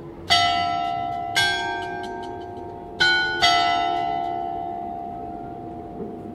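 Gros-Horloge belfry clock bells striking four strokes in two pairs, two bells of different pitch, each stroke ringing on and fading slowly. The strokes fall at about half past five by the recording's start time, so they mark the half hour.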